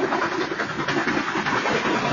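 BNSF freight train's cars rolling past a crossing at speed: a steady rumble and clatter of steel wheels on rail.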